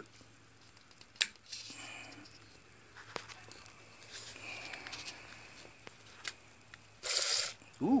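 Liquid Wrench penetrating-oil aerosol can: a sharp plastic click and a few small ticks as its locking nozzle collar is turned, then near the end a short hiss of spray lasting about half a second.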